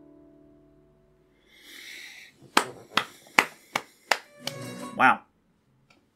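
Last piano chord of a ballad dying away to silence. After a short gap come a breathy rush of air, a quick series of about five sharp clicks, and a brief vocal sound from a man.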